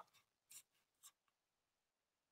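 Faint pen strokes on paper: two short scratches, about half a second and a second in, as a ballpoint pen writes on a sheet resting on a clipboard.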